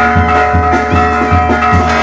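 Mexican brass band playing dance music: held brass chords over a steady bass drum beat, about three beats a second.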